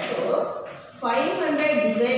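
A woman speaking, with a short pause about halfway through.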